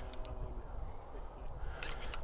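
Wind buffeting the microphone as a low rumble, with a faint distant voice in the first second and a few light clicks near the end.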